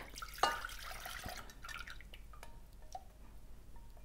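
Thick sugared milk pouring and dripping from a small bowl into a glass Pyrex measuring cup, guided off a silicone spatula. It is faint, with a louder splash about half a second in and a few light ticks later on.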